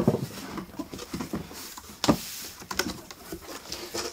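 Large cardboard box being tipped over and handled on a wooden table: cardboard scraping and rubbing, with a sharp knock about two seconds in.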